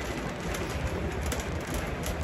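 A plastic shopping bag rustling close to a phone's microphone, with handling and walking noise over a steady low rumble.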